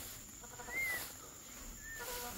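Peachick peeping: one thin, arched peep about a second in and a shorter one near the end, faint over a steady high insect drone.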